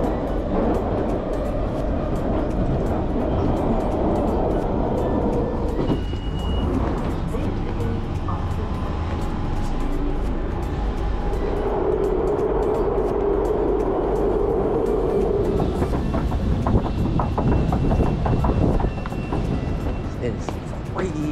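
London Underground train running, a steady low rumble inside the carriage, with a hum rising out of it for a few seconds past the middle and a run of clicks and knocks near the end.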